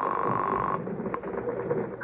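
A telephone ringing on the line, a steady trilling tone that stops a little under a second in, followed by a single click as the call connects.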